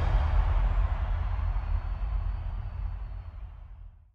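Outro logo sting: the tail of a deep electronic boom, a low rumble with a faint high ringing tone, dying away slowly and fading out near the end.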